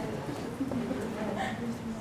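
Low, indistinct murmur of people's voices in a room.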